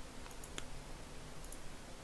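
A few faint, separate clicks of a computer mouse button over quiet room tone.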